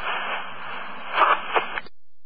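Police two-way radio transmission carrying only static hiss with no clear words: the channel opens abruptly, gives two louder crackles a little past halfway, and cuts off sharply just before the end.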